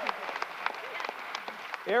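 A crowd applauding: scattered, uneven hand claps rather than a dense roar.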